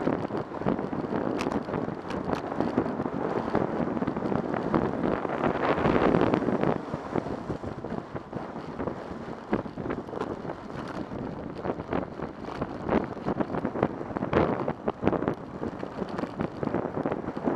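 Wind rushing over a bike-mounted action camera's microphone while riding, mixed with the noise of freeway traffic in the lanes alongside. The rush swells louder around six seconds in.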